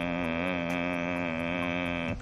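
A man humming one long, steady droning tone with a slight waver, a vocal imitation of the buzz from a badly wired electric resistance heater.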